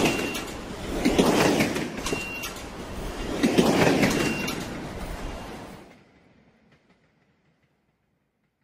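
A train running on its track: a rumble and rushing noise that swells three times, with brief high squeals, then fades away about six seconds in.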